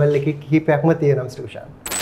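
A man talking, then near the end a short, bright, hissing sound effect with a ringing high tone, marking a glitch video transition.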